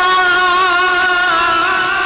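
A man's voice singing one long held note into a microphone, wavering slightly in pitch.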